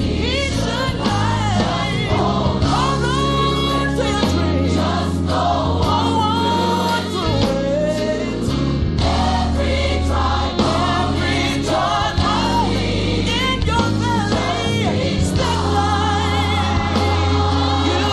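Recorded gospel music: a choir singing bending, ornamented melodic lines over a band with a steady bass line.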